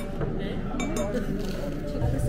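Dishes and chopsticks clinking on a table during a meal, with a few sharp clinks in the first second, over people talking.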